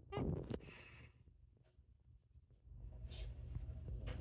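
Domestic cat purring while being stroked: a low steady rumble that grows louder from about three seconds in, after a short high-pitched sound and a brief rustle at the start.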